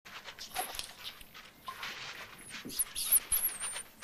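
An animal's irregular breathy bursts of noise, with thin high-pitched gliding squeaks in the second half.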